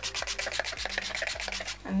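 Spray bottle of facial primer water in use, giving a rapid, even run of short hissing strokes, about a dozen a second, that stops just before the end.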